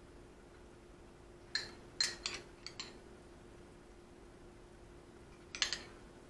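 Metal spoon clinking and scraping against a ceramic bowl while scooping cooked ground beef: a quick run of light clinks a second and a half to three seconds in, and two more near the end.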